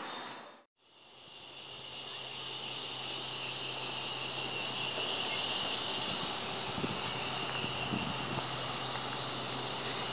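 Steady outdoor background noise with a constant low hum and a high hiss, fading in after a brief drop to silence about half a second in.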